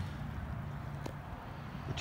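Low steady hum under faint outdoor background noise, with a single faint tick about a second in.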